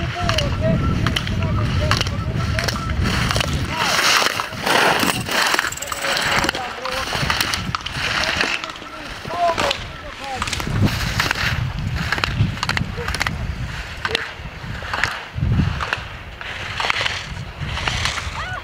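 Slalom skis carving and scraping on hard-packed snow, with repeated sharp hits and wind rumbling on the microphone. A voice calls out briefly near the start and again about halfway through.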